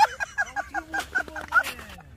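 A man laughing: a quick, high-pitched run of short honking 'heh' sounds, about six a second, fading toward the end.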